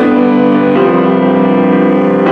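Piano prelude: slow, held chords played on a piano, with the chord changing a little under a second in.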